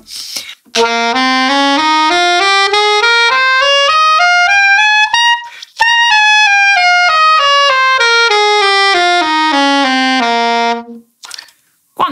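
Saxophone playing a C Dorian scale (C, D, E-flat, F, G, A, B-flat) two octaves up and back down in even steps at about three notes a second, with a short breath at the top.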